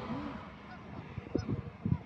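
Geese honking faintly from a distance, a short call near the start and fainter ones after. A few short low knocks come about a second and a half in.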